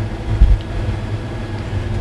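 A steady low machine rumble with a faint steady hum, and a single low thump about half a second in.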